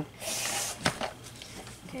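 A short rustle of a foil trading-card pack wrapper being handled, followed by a single sharp click.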